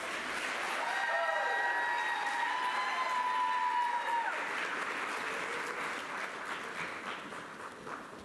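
Audience applauding and cheering at the end of a dance performance, swelling about a second in with a few sustained high cheers, then fading toward the end.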